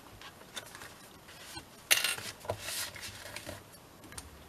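Paper and thread being handled while a journal is hand-sewn: soft rustling of paper pages and light clicks, with one louder rustle about two seconds in as the waxed thread is drawn through the paper.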